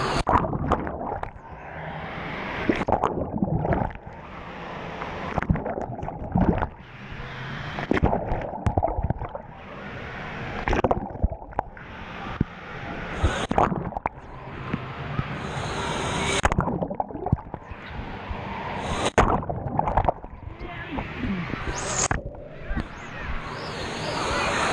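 Wave pool water sloshing and splashing around a camera held at the surface, in swells that build over a few seconds and then break off; the sound goes muffled several times as the camera dips under the water and clears when it comes back up.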